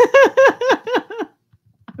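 A woman laughing: a quick run of about seven short 'ha' bursts, each dropping in pitch, over a little more than a second, then trailing off.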